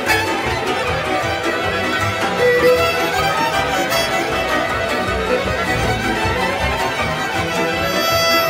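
Hungarian Gypsy orchestra playing live, with violins leading a lively, continuous melody.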